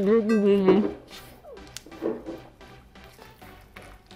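A sung voice holding and ending a drawn-out phrase in the first second, then quieter, with scattered faint clicks and small mouth sounds.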